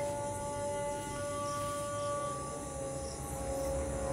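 Film background music: long held notes over a low drone, with a higher note coming in about a second in and fading out again.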